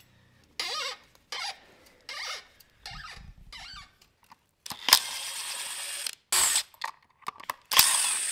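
Cordless drill-driver backing out the controller's mounting screws in a series of short runs. The longest run lasts about a second and a half, near the middle.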